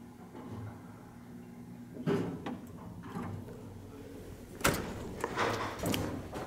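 Old Otis traction elevator arriving at the landing and its doors being opened: a faint low hum, a thud about two seconds in, then a sharp latch clack near the five-second mark as the manual swing hall door is pulled open, with knocking and rattling after it.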